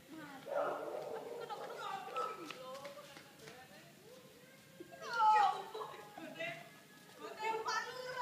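Several people's voices, children's among them, chattering and calling out, with one loud falling exclamation about five seconds in.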